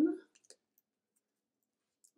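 Near silence after the tail of a spoken word, with a few faint, tiny clicks in the first second from hands twisting a paper flower on its pipe-cleaner stem.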